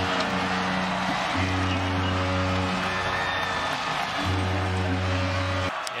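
Stadium music after a touchdown: long held chords, with a deep bass note sounding three times for about a second and a half each, over crowd noise. It cuts off suddenly near the end.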